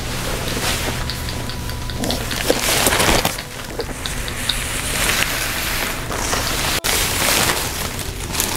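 Crinkling and rustling of a paper gown and a plastic bag close to the microphone, with handling knocks on the camera, broken by a sudden cut about seven seconds in.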